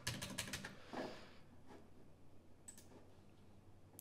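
Faint typing on a computer keyboard as a value of 2000 is entered: a quick run of keystrokes in the first half-second, a few more around a second in, and a single click near the end of the third second.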